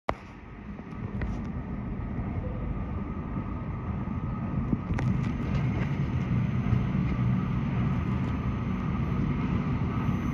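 Low rumble of an approaching Alstom Metropolis C830 metro train in the tunnel, growing slowly louder.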